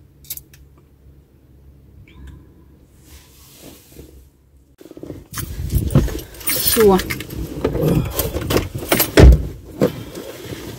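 Inside a car: a faint steady low hum, then from about five seconds in, rustling, clinks and knocks as a passenger climbs into the front seat and settles, with a heavy thump near the end.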